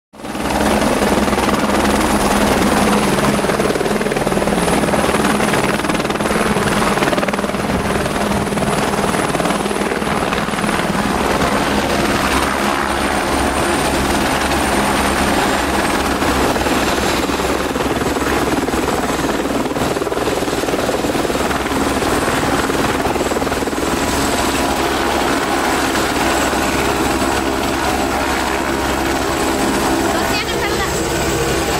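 Helicopter running on the ground: a steady, loud rotor and turbine noise, with a thin high whine that drops slightly in pitch about halfway through.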